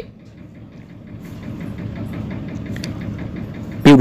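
An engine running: a steady low rumble that grows slowly louder, with a faint even ticking of about five a second.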